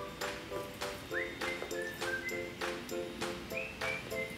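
Light background music: a whistled melody with short rising glides over short repeated chords, about three a second, with light ticking percussion.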